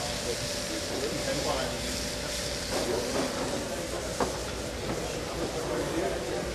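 Steady sizzling hiss from a charcoal grill with flames flaring up under the grate, with faint voices behind it and a light click about four seconds in.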